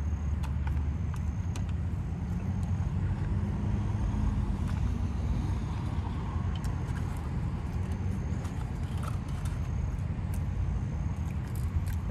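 A person biting into and chewing a Big Mac, with faint scattered wet clicks, over a steady low rumble heard inside a car's cabin.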